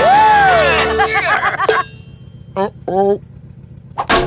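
Several cartoon voices yelling and whooping together over a running vehicle, cut off suddenly about two seconds in. Two short cries follow in the quiet.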